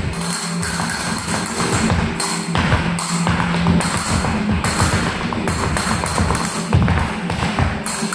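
Flamenco footwork (zapateado): heeled flamenco shoes striking a wooden floor in quick, irregular taps over flamenco music playing.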